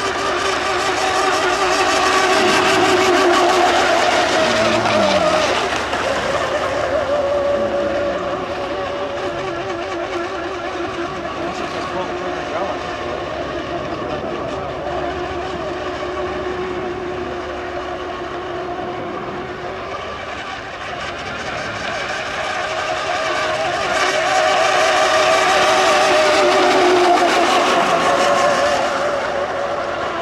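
Radio-controlled 1/10-scale fast-electric racing boats running laps, their high-pitched motor whine swelling as they pass about three seconds in and again near the end, with the pitch dropping as they go by.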